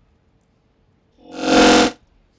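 A short, loud burst of synthesizer-like music, under a second long, swelling in and cutting off abruptly.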